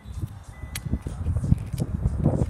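Kia Stinger's automatic power liftgate opening, with a sharp click a little under a second in, over a low uneven rumble.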